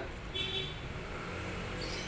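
Steady low rumble of road traffic, with a brief high-pitched tone about half a second in.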